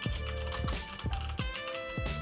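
Keys on a computer keyboard typed in a quick run of keystrokes, over background music with a steady beat.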